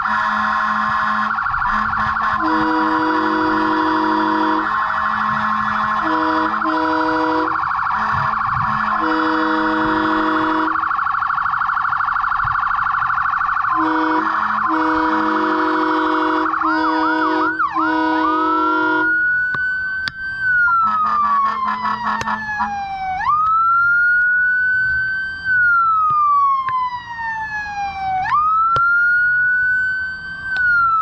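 Emergency vehicle sirens. For most of the first two-thirds a fast warbling siren sounds, with a lower horn-like tone cutting in and out. Then it switches to a slow wail that rises and falls about every five seconds.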